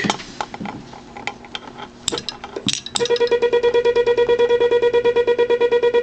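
A Les Logan Speed-X semi-automatic key (bug) clicks lightly as it is handled. About three seconds in, its vibrating pendulum starts keying a fast, even string of Morse dots as a mid-pitched beeping tone, which keeps going steadily: the damper is set so the pendulum still vibrates freely.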